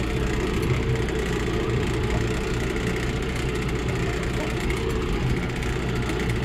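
Engine of a small off-road utility vehicle running steadily as it drives across a pasture, a continuous low drone.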